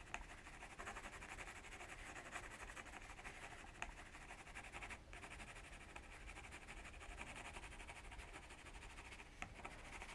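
Faint, fine scratching of a Derwent Inktense pencil shaded lightly with the side of its lead across watercolour paper.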